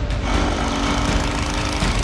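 A small motorboat engine running with a steady drone.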